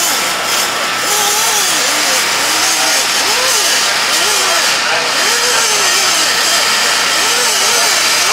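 Indistinct voices talking over a loud, steady hiss of background noise; no engine is running.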